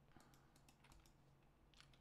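Faint, scattered computer keyboard clicks, about ten key presses in two seconds, close to silence.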